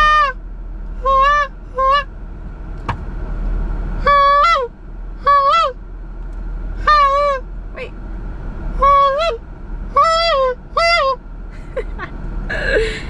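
Goose call blown by a beginner practising: about nine short honks in uneven groups, several ending with an upward crack in pitch.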